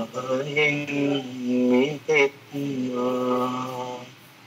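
Buddhist devotional chanting: voices chanting together in slow, long-held tones, with a short break about two seconds in.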